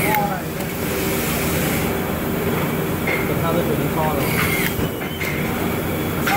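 Steady drone and hum of factory machinery on an assembly floor, with a few short sharp clicks about two and five seconds in.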